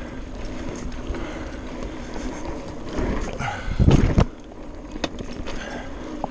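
Mountain bike rolling over a dirt trail: a steady tyre and ground rumble with small clicks and rattles, and a louder jolt about four seconds in.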